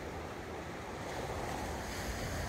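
Steady wash of Atlantic surf breaking on a sand beach, mixed with wind on the microphone.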